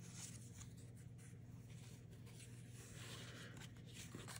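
Near silence: faint room tone with a low steady hum and light rustling of cardstock being handled.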